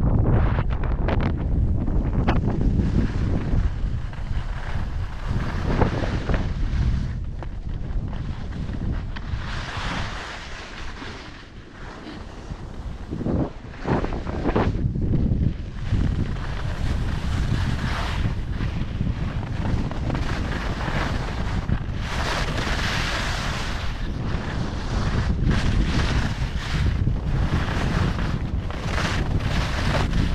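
Wind buffeting the microphone of a skier's camera as he skis downhill, a steady low rumble, with the hiss of skis scraping over groomed snow swelling and fading with each turn.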